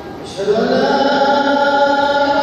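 A man's voice chanting the Islamic prayer recitation in long, held melodic notes, with a brief pause before a new phrase begins about half a second in.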